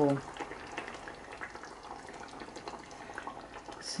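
Thick stew gravy bubbling quietly at a simmer in a pan, with a spoon stirring through it.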